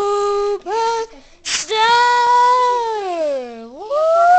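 A woman singing long, held, wordless notes; the last one slides slowly down in pitch and turns sharply up near the end.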